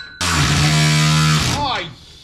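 Cordless ratchet running steadily for just over a second, starting and stopping abruptly, as it runs down a bolt on a pickup's transmission cross member.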